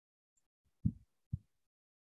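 Two soft, low thumps about half a second apart: a stylus and hand knocking on a drawing tablet while writing.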